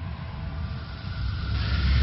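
Low rumbling sound effect of an animated logo intro, with a rushing noise swelling in near the end.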